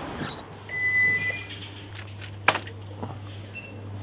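A shop's electronic door chime sounds once as the door opens: a short two-note beep, the second note higher. A steady low hum then runs on inside the shop, with a single sharp click about two and a half seconds in.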